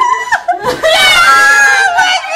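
Several women shrieking and squealing with excitement, with one long high-pitched squeal held for most of a second near the end.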